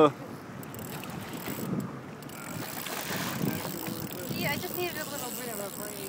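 Wind on the microphone, with faint voices in the background.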